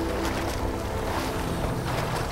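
Background music thinning out into an even wash of noise, like water or wind ambience, with a low musical tone coming back in about halfway through.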